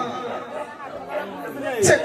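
Speech with background chatter, only voices, and one louder spoken word near the end.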